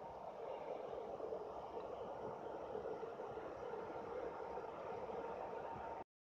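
12 V DC cooling fan in an amplifier chassis running with a steady whir, building up over the first second, then cutting off abruptly at the end.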